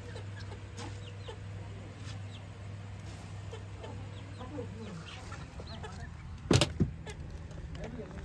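Chickens and chicks calling softly now and then over a steady low hum, with two sharp knocks about six and a half seconds in.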